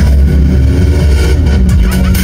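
Live techno played on synthesizers through a loud PA: a heavy, steady bass under synth lines that glide up and down in pitch.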